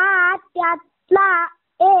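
A child singing: one long held note that ends about a third of a second in, then short sung phrases with brief gaps between them.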